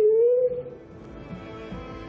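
A woman's long, drawn-out crying wail that fades out about half a second in, followed by soft background music with held notes.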